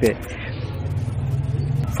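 A low rumble with a faint hiss, slowly growing louder.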